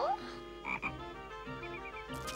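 Cartoon sound effect of a frog croaking, low croaks coming twice about a second apart, with faint music underneath.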